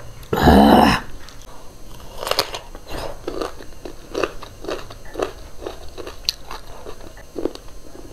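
Close-up crunchy chewing of raw cucumber, short crunches about twice a second. Near the start there is one loud breathy voice sound, like an exhale.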